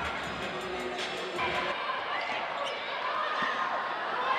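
Game sound in a basketball arena: crowd noise with a basketball bouncing on the hardwood court during a scramble for a loose ball.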